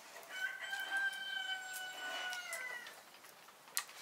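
A rooster crows once, one long call of about two and a half seconds that drops slightly at its end. Near the end there is a sharp click from hazelnuts being shelled by hand.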